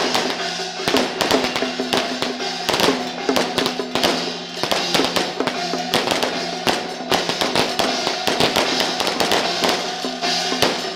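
Temple procession percussion: drum and brass cymbals struck in a fast, dense rhythm, with a steady ringing tone beneath.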